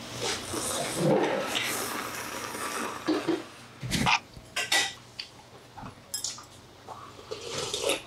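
Mouth sounds of someone eating, with sharp clicks of metal utensils against stainless-steel bowls, the loudest about four seconds in. Near the end a spoon begins scraping through bibimbap in a steel bowl as it is mixed.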